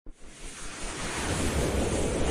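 Whoosh sound effect of an animated logo intro: a rushing noise that swells steadily louder.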